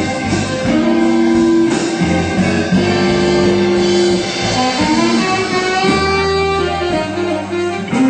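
Live blues band playing an instrumental passage: electric guitar, saxophone, bass guitar, drums and keyboard, with the lead holding long notes that change pitch every second or so.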